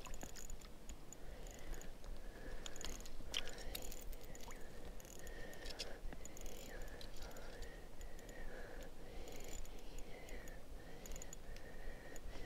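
Faint clicks and short thin squeaks of fishing tackle and line being worked by hand while a hooked brown trout is hauled up through a hole in the ice.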